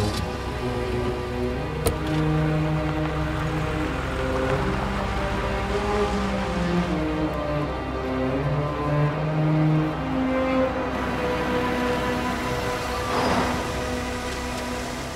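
Background music score of sustained, slowly shifting low notes, with a sharp click about two seconds in and a short swell of hiss near the end.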